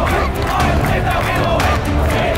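A crowd of schoolboys chanting and yelling together, with loud rhythmic clapping.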